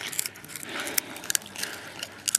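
A vizsla puppy biting and chewing on a wooden stick: irregular crunching and small sharp cracks of teeth on wood.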